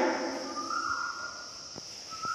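Chalk writing on a blackboard: short squeaky tones and a couple of light taps, over a steady high-pitched hiss.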